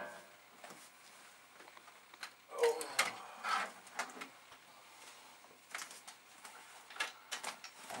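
Scattered clicks and light knocks of computer hardware being handled and set down on a cluttered desk.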